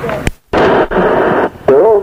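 An old, hissy recording of a man's voice: a click and a brief dropout, then about a second of dense hiss, and near the end the man starts a drawn-out sung line.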